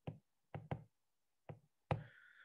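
A stylus tip tapping on a tablet's glass screen while handwriting, about five light, irregularly spaced taps.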